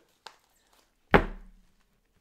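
A faint click, then a single loud thump about a second in that dies away over about half a second.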